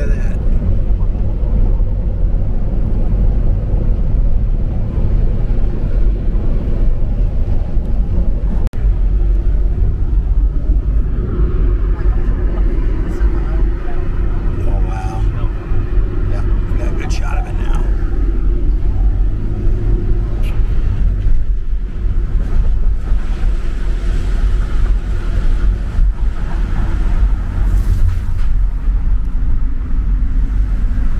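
Wind buffeting the microphone and road noise from a moving car: a loud, steady low rumble.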